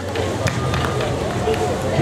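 Several voices chattering over each other, with light footsteps on the stage.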